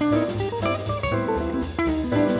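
Gibson ES-175 archtop electric guitar through a Fender Princeton Reverb amp, playing fast single-note jazz lines in a quick run of notes. Under it is a backing track of bass, piano and drums.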